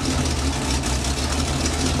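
1977 Chevrolet pickup's engine idling steadily with an even, low hum. The engine runs without a choke and has an exhaust leak that the owner has not yet fixed.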